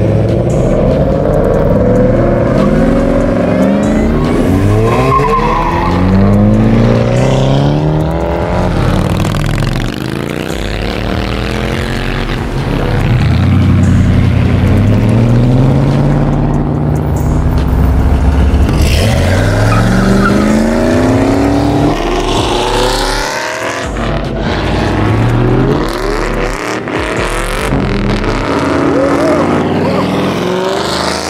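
Several V8 performance cars and sport pickups accelerate hard away one after another. Each engine revs up through the gears, the pitch climbing and falling back at each shift. Tyre squeal comes in about two-thirds of the way through.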